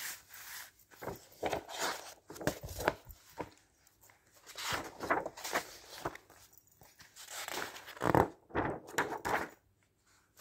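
Magazine pages being turned and the magazines handled, heard as irregular papery rustles and swishes in bursts. The loudest comes about eight seconds in.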